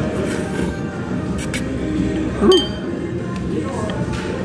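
A sharp clink of tableware with a short ring about two and a half seconds in, after a couple of faint clicks, over steady background music.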